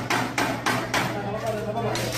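Hands banging down on classroom desks in a fast, even rhythm of about three knocks a second.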